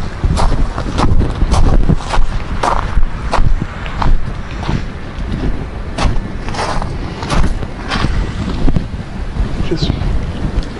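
Footsteps crunching on gravel at walking pace, about a step and a half a second, over a steady low rumble of wind buffeting the microphone.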